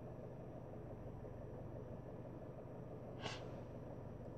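A low, steady hum inside a parked car, with one short breath from the man about three seconds in.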